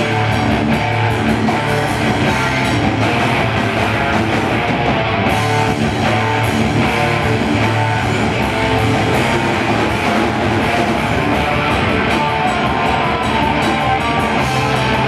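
Black metal band playing live: electric guitars and a drum kit at full volume, dense and continuous, with fast, even drum and cymbal strokes.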